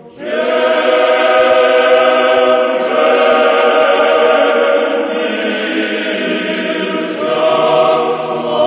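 Background choral music: a choir singing slow, sustained chant-like chords. It comes in suddenly and loud at the start, and the chord changes every couple of seconds.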